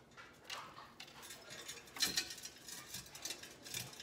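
Faint rustling and light, irregular clicking as a strand of battery-powered micro fairy lights on thin wire is bunched and tucked into a small basket, the sharpest click about two seconds in.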